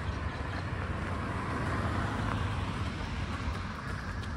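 Road traffic: a car passing on the adjacent road, its tyre and engine noise swelling about two seconds in and easing off, over a steady low traffic rumble.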